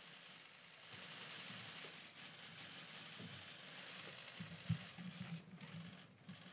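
Faint, rapid clicking of press photographers' camera shutters, blending into a hiss, with rustling in the room. A few low knocks come in the last second and a half.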